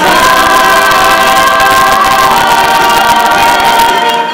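Mixed teenage pop choir singing a loud held chord, the top voices sustaining one note and stepping slightly lower about halfway through.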